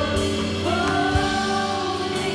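Live church worship music: a singer and backing vocalists holding long notes over a band with guitar, keyboard and drums.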